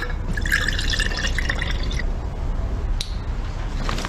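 Juice being poured from a jug into a glass, splashing and filling for about the first two seconds, followed by a single sharp click about three seconds in, over a steady low rumble.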